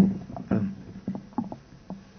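A quick run of dull thumps and knocks, about six in two seconds, the first the loudest, fading out toward the end.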